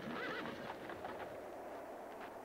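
A horse whinnies once near the start, a short wavering call, amid scattered hoof clops on dirt.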